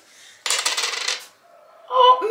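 A gold metal ring dropped onto a laminate countertop, rattling on the hard surface for under a second about half a second in, then coming to rest.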